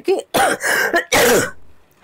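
A woman clearing her throat with two harsh coughs, the second shorter and louder.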